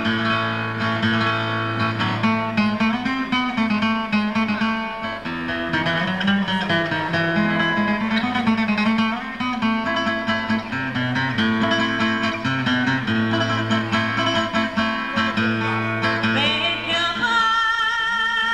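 Women singing a folk song to acoustic guitar accompaniment, with long held notes. Near the end a single female voice comes in loud and high with a strong vibrato.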